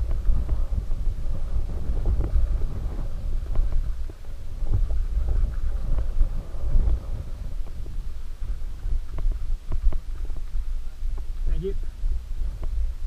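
Mountain bike descending rough dirt singletrack, heard through a muffled GoPro: a steady low rumble of tyres and wind with frequent knocks and rattles as the bike rolls over rocks and ruts. A short voice is heard near the end.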